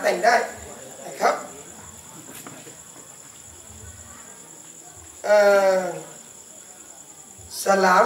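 Steady high trilling of crickets or similar insects under a man's voice: a few words at the start, one short syllable about a second in, and a drawn-out hesitant 'ehh' with a falling pitch about five seconds in.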